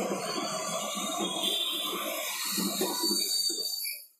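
Dry-erase marker dragging and squeaking across a whiteboard, drawing an arrow and writing letters, scratchy and uneven throughout and stopping abruptly at the end.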